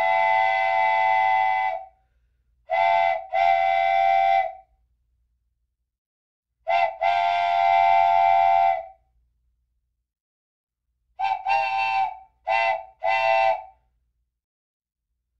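A multi-note whistle, several pitches sounding together like a chime train whistle, blown in blasts: one long blast, then a short and a long, again a short and a long, and near the end about four short toots.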